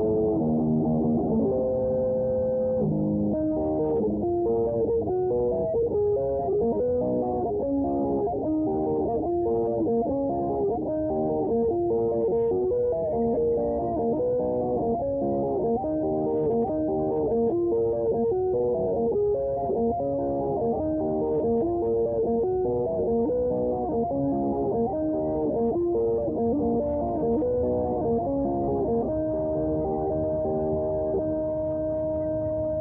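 Electric guitar playing a lead line: a few held notes, then from about three seconds in a steady stream of fast single-note runs.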